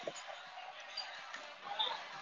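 Restaurant dining-room background: a steady hum of other diners' chatter, with a low thump just at the start and a few light clinks near the end.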